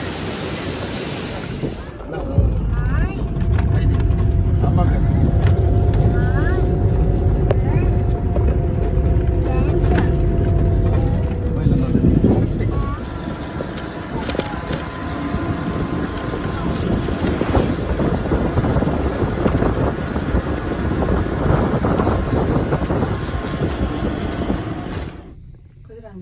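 A waterfall's steady rush for about two seconds, then a sudden change to a moving vehicle's road and engine noise with heavy wind rumble on the microphone and a few steady engine tones. This drops away near the end.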